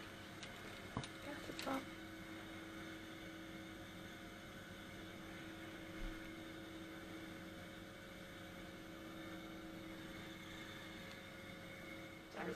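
Faint steady electrical hum of room equipment, with a few light handling clicks in the first two seconds.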